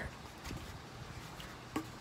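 Faint handling sounds of a paper bowl being turned over in a hand, with a few light taps, over a low steady background hum.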